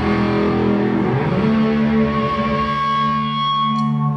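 Distorted electric guitar through effects, holding sustained chords that ring on, then moving to a new held chord about a second and a half in.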